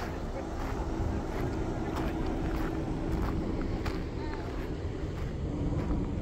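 Footsteps crunching on gravel at a walking pace, roughly two a second, over a steady low rumble and hum from the vehicles and open air, with faint voices in the background.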